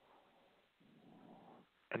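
Near silence, with a faint breath lasting just under a second, about a second in.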